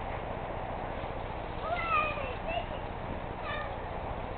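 A toddler's high-pitched vocalizing: a couple of short rising-and-falling calls near the middle and a brief high squeal near the end.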